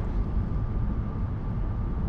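Steady low rumble of a car on the move, with a faint thin steady whine above it.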